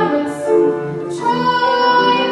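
A young woman singing a Broadway show tune solo into a microphone, holding long notes, with grand piano accompaniment.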